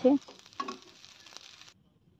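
Faint sizzle of spiral masala pasta frying in a pan, with light clicks of a metal spatula stirring it. The sound cuts off abruptly shortly before the end.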